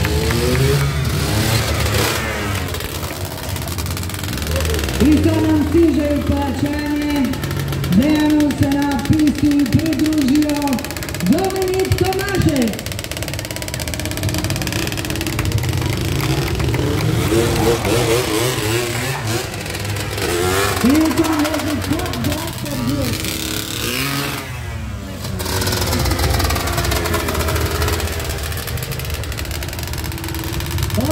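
A stunt vehicle engine revving repeatedly, pitch rising, held high for a second or two, then dropping, over and over, as a quad bike is ridden in wheelie stunts. Under it a steady low rumble runs throughout.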